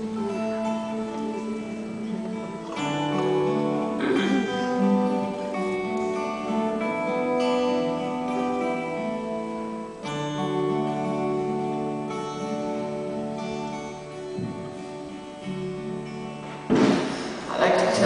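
Acoustic guitars playing, with chords and single notes ringing and changing every second or so. A louder, rougher burst of sound comes in about a second before the end.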